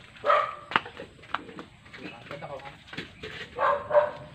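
A dog barking twice: two short calls, one just after the start and one near the end, with a few light clicks in between.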